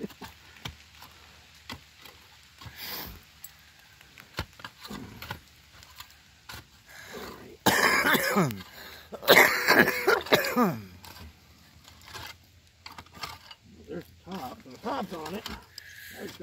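Scattered small clicks and scrapes of hand digging in dump soil, then a man coughing hard in two bouts about halfway through. Faint talk near the end.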